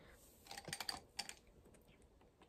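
Small makeup items being handled: a quick cluster of light clicks and taps about half a second in, dying away after about a second.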